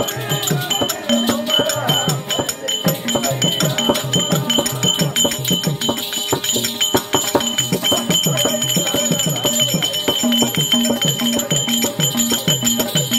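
Traditional Tamil therukoothu music. A hand drum plays a steady beat of bass strokes that fall in pitch, with a jingling rattle over it and high metallic ringing.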